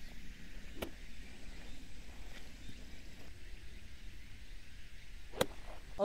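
52-degree wedge striking a golf ball and taking turf on a fairway shot: one sharp click about a second in. Another sharp click comes near the end, over faint steady outdoor background noise.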